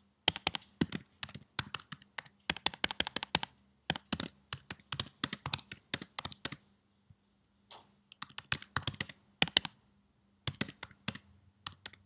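Typing on a computer keyboard: quick runs of key clicks with a couple of short pauses, over a faint steady low hum.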